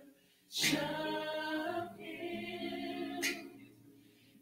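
Group of voices singing unaccompanied: one sung phrase begins about half a second in and fades out after about three seconds, with short pauses before and after.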